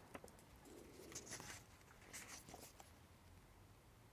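Near silence with a few faint rustles and light clicks from hands handling a table tennis rubber sheet.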